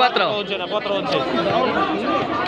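Crowd of spectators chattering, many voices overlapping at a steady level.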